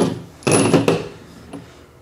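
A short scuffing noise about half a second in, from hands and objects moving on a plastic folding table, with quieter shuffling after.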